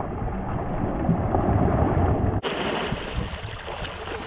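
Shallow lake water splashing and sloshing around a camera held at the water's surface as a child splashes through it, with a heavy low rumble of water and wind on the microphone. The sound is muffled for the first two and a half seconds, then turns brighter.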